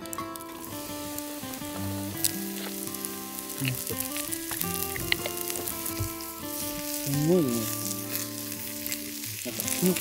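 Whole mushrooms sizzling in hot oil in a small cast-iron skillet over a wood fire, stirred with a wooden spoon, with a few sharp clicks.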